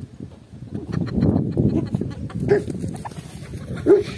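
A Kangal dog breathing hard and moving close by, starting about a second in, with two short whines, the louder one near the end.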